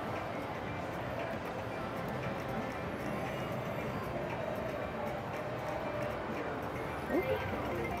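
IGT Prosperity Link video slot machine playing its spin sounds and game music through repeated spins, over the steady din of a casino floor.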